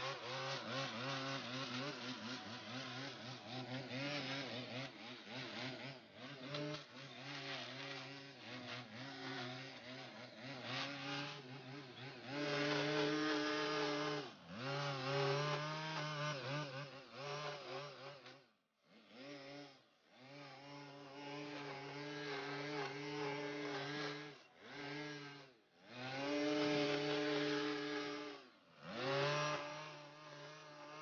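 Gas-powered string trimmer running at high revs while edging grass along a sidewalk. In the second half the throttle is let off several times, the engine dropping nearly to idle and then revving back up.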